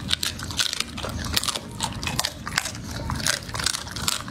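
A chocolate Labrador chewing and gnawing a raw meaty rib bone: a rapid, irregular run of wet biting and crunching clicks.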